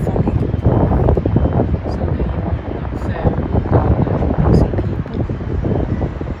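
Wind buffeting a phone's microphone in a loud, uneven low rumble, with indistinct voices underneath.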